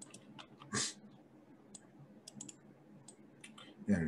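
Computer mouse clicking: a few faint, scattered sharp clicks while a line is drawn on a chart, with one louder short noise just under a second in.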